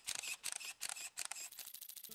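A rapid run of camera-shutter clicks used as a transition sound effect, many clicks a second.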